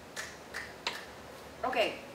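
Three short, sharp clicks about a third of a second apart, then a brief vocal sound near the end.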